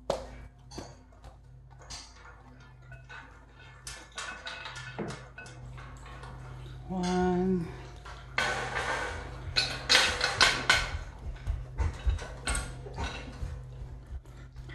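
Metal nuts, bolts and washers clinking and rattling as they are handled and fitted to a metal cargo rack, in a run of sharp clicks that grows densest and loudest past the middle. A short low hum sounds about seven seconds in.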